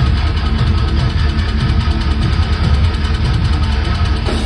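Heavy metal band playing live at high volume, the sound dominated by a dense, fast low-end rhythm of kick drums and low, distorted guitar and bass riffing.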